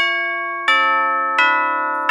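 A chime: three bell-like notes struck about two-thirds of a second apart, each ringing on as it fades.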